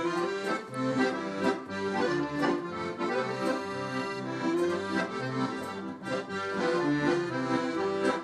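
Two piano accordions, a red student instrument and a black Hohner, playing a tune together: sustained chords and melody over bass notes that change in a steady rhythm.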